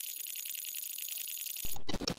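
Static-glitch sound effect under an animated logo outro: a thin high-pitched electronic hiss with steady whining tones and a fast crackling flicker, then a brief louder burst of noise near the end.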